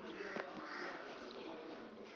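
Faint room noise in a pause between speaking and singing, with one soft click about half a second in.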